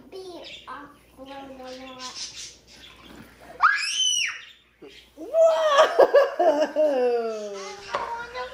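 Young children's excited vocalising and laughter, with one high squeal that rises and falls about four seconds in.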